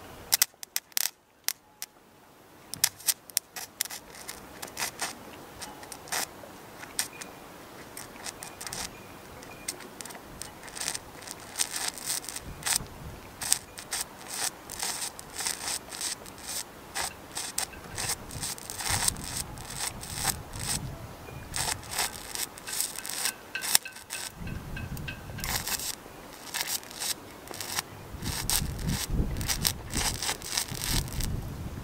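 Stick-welding arc powered by two 12 V car batteries in series, burning a thin 1.6 mm stainless steel rod: an irregular crackling and spitting with many sharp pops. It drops out briefly about a second in and again about six seconds before the end.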